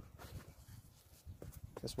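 Faint background noise in a pause between a man's words, with a single spoken word near the end.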